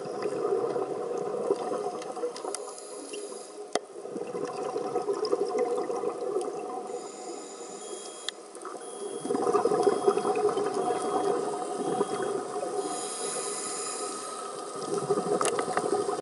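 Scuba diver's breathing underwater: long stretches of exhaled regulator bubbles, loudest in the last third, broken by short pauses and a few sharp clicks.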